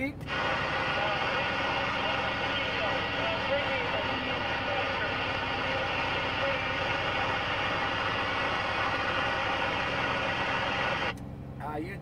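CB radio speaker receiving a noisy incoming transmission: a steady rush of static with faint, garbled voice under it, cutting off abruptly about eleven seconds in.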